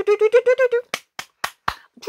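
A woman's voice chanting a quick run of wordless syllables on one steady pitch, then four sharp hand claps about a quarter second apart.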